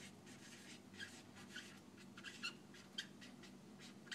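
Marker squeaking on a whiteboard as words are written, in faint, short, irregular squeaks a few times a second.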